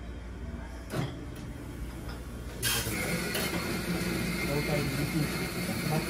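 Café room sound: a low steady hum and faint murmured conversation. A sudden hiss starts about two and a half seconds in and carries on steadily with a thin high tone.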